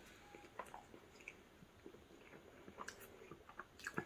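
Faint chewing of a mouthful of taco on a soft flour tortilla, with scattered soft mouth clicks, a few more of them in the second half.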